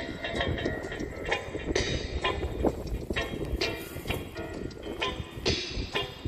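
Reggae record playing through the small speaker of a portable suitcase turntable, a steady beat in an instrumental stretch between vocal lines, over a low rumble of wind on the microphone.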